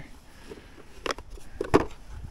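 A few short clicks and knocks of wires, connectors and a converter being pushed into a cordless lawn mower's plastic battery compartment. The sharpest knock comes about three-quarters of the way through.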